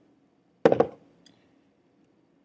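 A short clatter of about three knocks in quick succession, a little over half a second in, followed by a faint click: hands handling tools and materials at a fly-tying vise.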